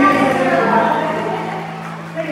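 A man's voice amplified through a handheld microphone and PA system over a steady held musical note.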